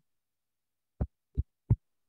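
Silence on a video-call line, then three short dull thumps in quick succession, about a third of a second apart, starting about a second in.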